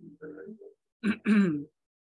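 A man clearing his throat, with two short, louder throaty bursts about a second in after some softer throat sounds.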